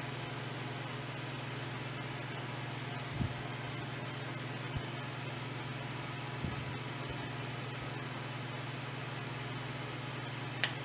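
A steady low hum with a hiss over it, with three soft knocks about three, five and six and a half seconds in as fingers rub butter into flour and brown sugar in a stainless steel mixing bowl.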